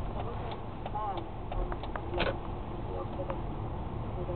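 Road and engine rumble of a car driving slowly, heard from inside the cabin, with a few scattered light clicks.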